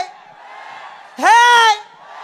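A man's single held, sung shout of "Hey!" into a stage microphone, rising in pitch at the start and dropping off at the end, over a faint background of crowd noise.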